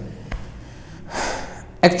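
A man's short audible inhale about a second in, picked up close by a clip-on lapel microphone during a pause in speech; his speech starts again near the end.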